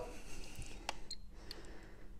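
A few faint clicks from handling a Megger multifunction tester, one sharp click a little under a second in and two softer ticks soon after, over quiet room tone with a faint steady hum.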